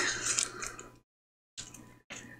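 Faint rubbing and scraping of a glue applicator being worked across paper, fading out within the first second, then coming back in short faint snatches after a moment of dead silence.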